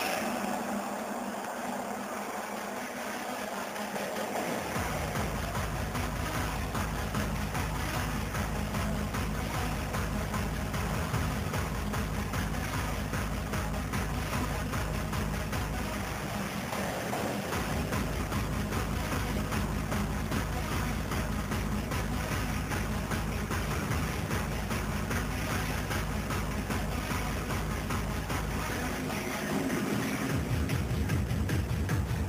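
Electronic hardstyle DJ-set music: a breakdown without bass, then a steady bass-heavy beat comes in about four seconds in, drops out briefly around the middle, and returns.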